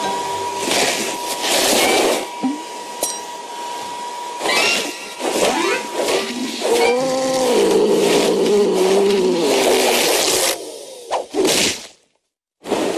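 Cartoon vacuum cleaner sound effect: the machine runs with a steady high whine, broken by repeated whooshing bursts of suction and a wavering pitched sound in the middle. The whine stops a little before the end, and a last quick whoosh follows.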